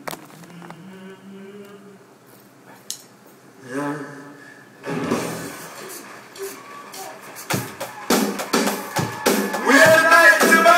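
Voices and room chatter, then a live rock band starts up about halfway through with a drum beat and guitar. A sung vocal comes in near the end.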